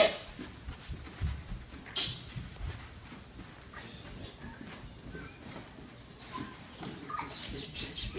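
Quiet room with a few soft, low thumps in the first three seconds, then faint voices near the end.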